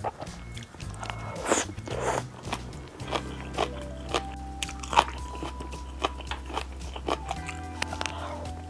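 Close-miked eating sounds: chewing of glass noodles and rice cakes in black bean sauce, with many sharp wet mouth clicks and a couple of longer slurps about one and a half to two seconds in. Soft background music with steady low notes plays underneath.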